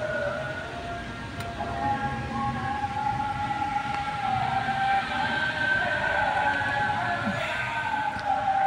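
Heavy rain falling steadily, with several long, slowly wavering wailing tones over it.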